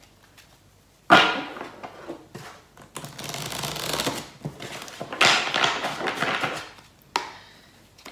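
A deck of tarot cards shuffled by hand: several bouts of rustling, clicking card noise. The loudest starts suddenly about a second in, and another comes about five seconds in.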